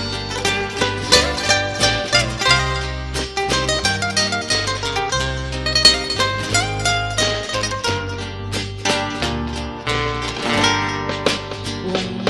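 Background music: an instrumental passage of a song, a quick plucked-string melody over steady bass notes.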